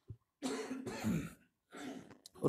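A man clearing his throat in two rough bursts, the first about a second long and the second shorter near the end.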